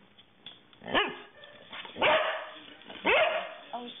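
A black dog barking three times, about a second apart, each bark rising sharply in pitch.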